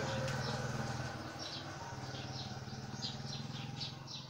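Birds chirping in short, repeated high calls over a steady low hum.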